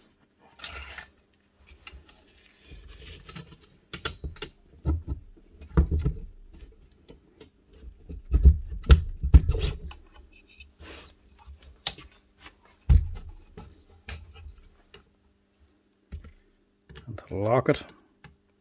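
Metal parts of an old Hitachi TR8 plunge router being handled as its base and springs are fitted back on: scattered clicks and knocks, with a cluster of heavier thumps about eight to ten seconds in. A brief bit of voice near the end.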